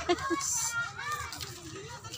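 Children's voices and background chatter from people a little way off, with a brief high-pitched cry about half a second in.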